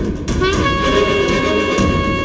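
A long blown horn note that rises briefly and then holds one steady pitch from about half a second in, over orchestral background music from the serial's soundtrack.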